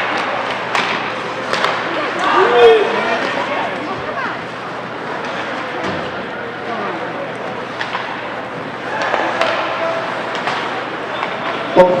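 Ice hockey play in an indoor rink: a steady scrape of skates on the ice with scattered sharp clacks and knocks of sticks, puck and boards, under shouting from spectators and players.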